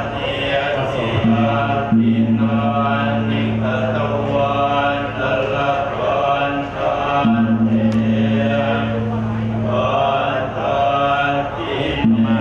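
Buddhist monks chanting in unison, holding a low steady drone in long phrases broken by short pauses for breath.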